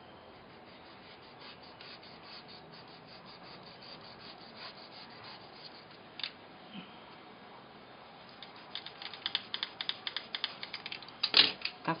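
Snap-off craft knife cutting a light slit into an EVA foam-covered ball: faint ticking at first, then a quickening run of small, sharp clicks over the last few seconds.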